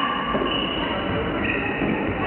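Steady din of a floorball game in a sports hall, with high squealing tones held over the noise for about a second at a time.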